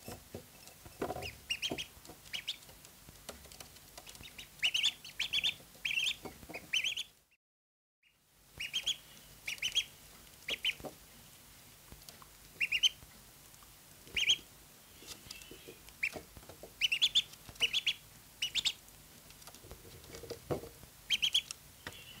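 Two ducklings peeping in short, high bursts, often in quick runs of three or four. Between the calls come light clicks of their bills pecking at ceramic saucers of crumbly feed.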